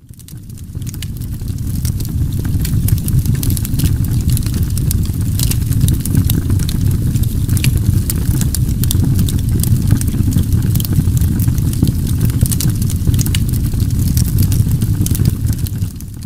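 A steady low rumble with scattered sharp crackles over it, fading in over the first two seconds and staying level after that.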